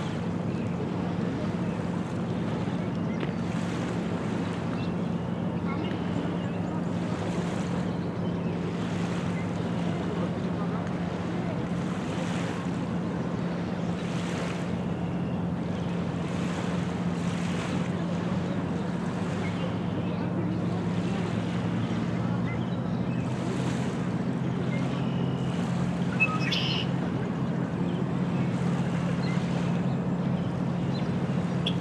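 Small lake waves lapping on a pebble shore, swelling every second or two, over a steady low engine drone that deepens about two-thirds of the way through. A brief high chirp sounds near the end.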